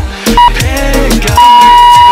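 Workout interval-timer countdown beeps over background music: a short beep, then a long, held beep about a second and a half in. The long beep marks the end of the exercise set.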